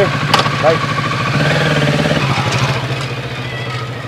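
Kawasaki Ninja sport motorcycle engine running, picking up revs about one and a half seconds in as the bike pulls away, then dropping back and fading as it rides off.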